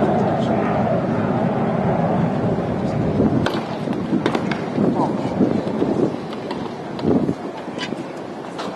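Tennis ball struck by racket strings in a rally, a few sharp pops spread over several seconds. Under them runs a continuous murmur of spectators' voices.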